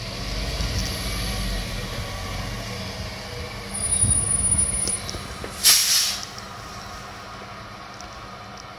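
Rear-loading refuse truck pulling up with its diesel engine rumbling, a brief high brake squeal about four seconds in, then a short loud hiss of air from its air brakes as it halts. The engine then idles more quietly.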